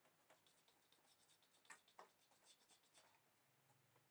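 Near silence with faint scratching and small clicks, the two sharpest about halfway through.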